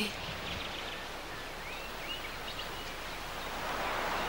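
Steady outdoor background hiss with a few faint, short bird chirps in the first second or so.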